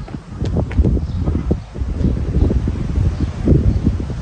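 Wind buffeting the microphone: an irregular low rumble that rises and falls in gusts, with a few faint clicks.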